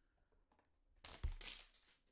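Foil trading-card pack wrapper and cards being handled: a short crinkling rustle with a light knock about a second in, after a faint first second.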